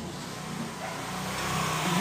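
A motor vehicle's engine running and growing louder over the two seconds, as if approaching.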